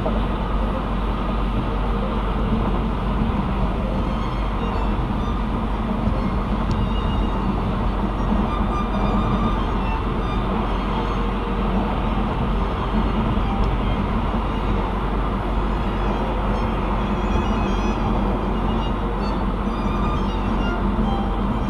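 Steady road and tyre noise of a car cruising at highway speed, heard from inside the cabin as an even low rumble.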